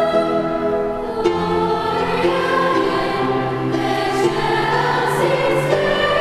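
Girls' choir singing a carol with organ accompaniment, in sustained notes that change about once a second, in a large reverberant church.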